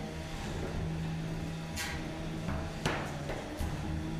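Steady electric-motor hum from 3 lb combat robots running in the arena, with two sharp knocks about a second apart near the middle, as the robots hit each other or the arena.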